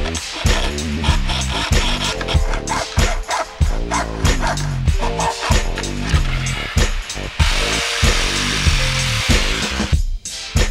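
Background music with a steady beat. About seven seconds in, a reciprocating saw starts cutting the car's sheet-metal floor tunnel and runs until near the end.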